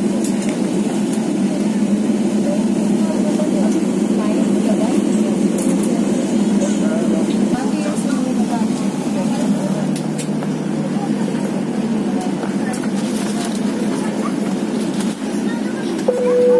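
Steady low hum inside a parked airliner's cabin, with indistinct voices and a few light clicks over it.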